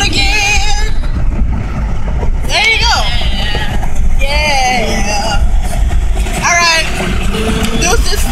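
Steady low rumble of a car driving, heard from inside the cabin, under short wavering phrases from a woman's voice.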